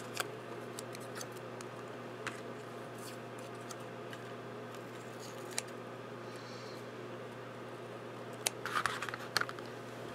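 Small scissors snipping a tiny leaf out of green paper: a few faint, isolated snips over a low steady hum, with a short burst of rustling and clicks near the end.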